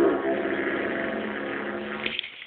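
Didgeridoo droning on one steady low note, its overtones shifting as the player's mouth changes shape, easing off and stopping at the end. Heard through a cellphone microphone, thin and lacking the top end.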